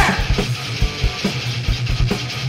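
Rock music with no vocals: guitar, bass and drums, with a steady, fast kick-drum beat.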